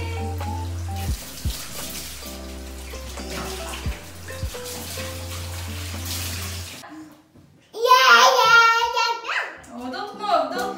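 Water splashing and being poured in a bathtub as a baby is bathed, over a steady low hum with soft background music. About seven seconds in, the water sound and hum cut off suddenly, and a loud, high, wavering voice follows.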